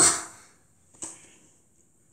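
A child's voiced exclamation dies away at the start, then a single short click about a second in.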